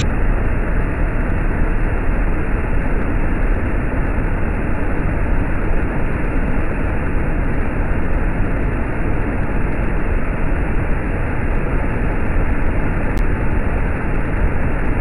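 Iguazu Falls: the steady, heavy rush of a huge volume of water pouring over the brink, deep and unbroken.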